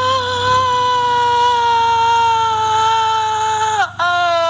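A woman's voice holding one long, loud, high note, steady in pitch, which sags and cuts off near the end; a second, lower held note starts right after.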